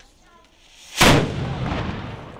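A single shot from a small replica medieval cannon on a wooden carriage, firing a black-powder charge about a second in: one sharp blast with a long fading echo.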